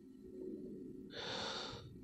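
A faint breath, a short soft intake of air about a second in.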